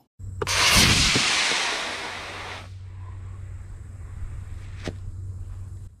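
Estes D12-3 black-powder model rocket motor igniting and burning with a loud rushing hiss that lasts about two seconds, then fades as the rocket climbs away. Near the end comes one faint sharp pop: the ejection charge firing to deploy the parachute.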